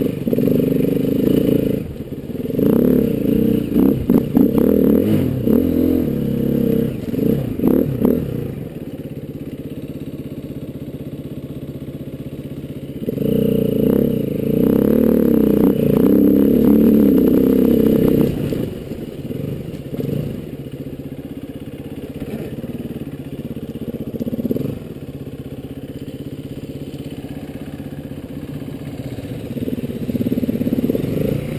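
KTM trail motorcycle's engine climbing a rough track, opening up in two long bursts of throttle (from about two seconds in to eight, and again from about thirteen to eighteen) and running lower between and after. Clattering knocks from the bike over the rough ground come through the first half.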